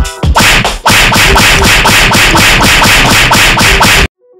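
A fast, loud run of dubbed comic slap-and-punch sound effects, about six hits a second, that cuts off suddenly at the end.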